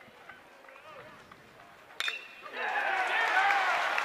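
Faint crowd murmur, then about halfway through a single sharp ping of a metal baseball bat striking the ball, after which the crowd noise swells into cheering.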